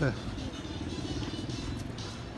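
A motor running steadily with a fast, even pulse, under outdoor street noise.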